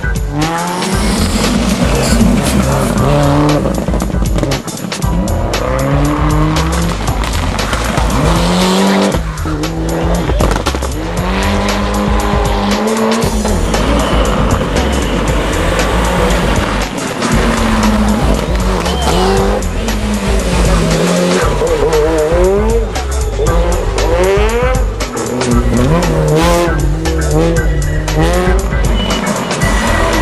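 Rally car engines revving hard, the pitch rising and falling over and over as the cars accelerate and shift, with tyres squealing as they slide through the corners on tarmac.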